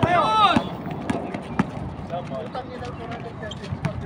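Pickup basketball game on a concrete court: a loud shout in the first half-second, then quick footsteps and scattered sharp knocks, with faint voices calling in the background.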